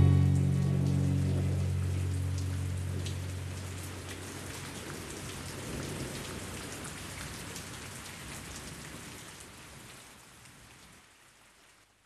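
Steady rain falling, with the song's last low chord ringing out and dying away over the first few seconds. The rain then fades out gradually near the end.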